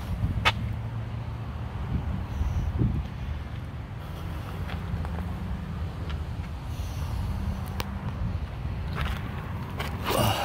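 Chevrolet Silverado 2500HD Vortec Max's gasoline V8 idling steadily, with a few light clicks and footsteps on gravel.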